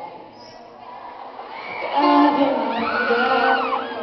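Concert audience cheering and shrieking during a break in a live acoustic song. The first second and a half is quieter, then the crowd's high-pitched screams swell from about two seconds in.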